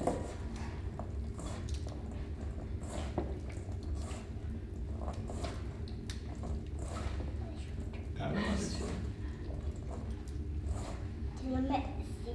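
Hands tossing and squeezing a grated raw-vegetable salad in a stainless steel bowl: soft, wet squishing and rustling. A steady low hum runs underneath.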